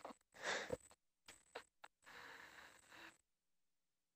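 Faint, brief human vocal noises without clear words, then a breathy exhale-like sound, all stopping about three seconds in.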